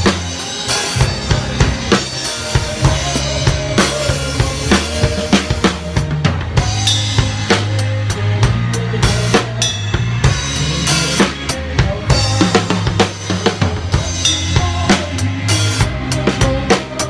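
Drum kit played loud and close in a live rock band: a driving beat of snare, bass drum and cymbal hits over a steady band backing with bass.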